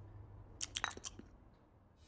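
A person sipping from a coffee cup: a handful of short, quiet slurps bunched together about half a second to a second in.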